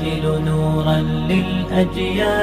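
Vocal intro music: chanting voices holding long, layered notes that glide from one pitch to the next.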